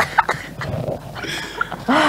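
A man and a woman laughing together, in breathy, broken-up bursts that grow louder in the second half.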